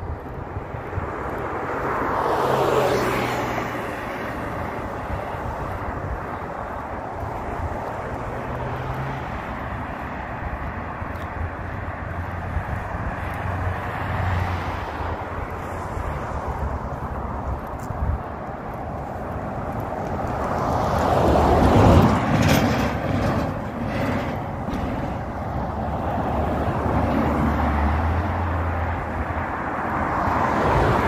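Road traffic: vehicles passing, one swelling and fading about two to three seconds in and a louder one about twenty-two seconds in, over a steady background of outdoor noise.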